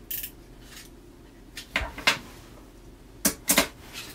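Short plastic clicks and knocks, about six of them in two clusters, from handling an electronic LED road flare while loading its AAA batteries and closing it up.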